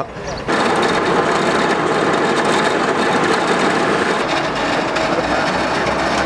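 Rear-loading garbage truck running steadily, its engine and loading machinery at work, starting about half a second in.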